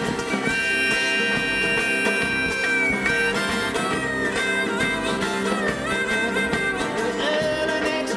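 Bluegrass string band playing an instrumental break on banjo, guitars, mandolin and upright bass. A lead instrument holds one long high note for the first few seconds, then plays a sliding melody over the strummed and picked accompaniment.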